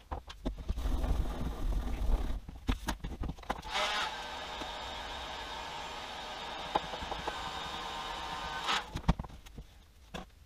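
Electric heat gun blowing steadily for about five seconds, switched on about four seconds in and off near the end, warming the plastic broom holder slightly so its foam tape will stick in the cool. Before it, knocks and scrapes of the holder being handled.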